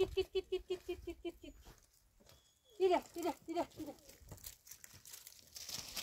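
A puppy whimpering in quick, repeated short yelps, then a few falling whines about three seconds in. Footsteps crunch on loose stony ground near the end.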